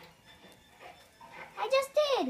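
A child's voice: after a quiet stretch, a short, high-pitched wordless vocal sound near the end that rises and then falls in pitch.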